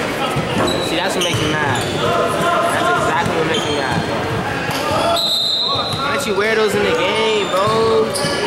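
Basketball bouncing on a hardwood gym floor, with voices of players and spectators echoing in the large hall.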